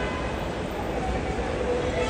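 Steady rumbling noise of luggage trolleys and foot traffic, with faint voices in the background.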